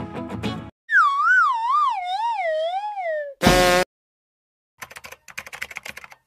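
Background music cuts off, followed by a whistle-like tone that wobbles as it falls for about two seconds and a short, loud buzz. After a second of silence come rapid keyboard-typing clicks, a typing sound effect for text being typed out.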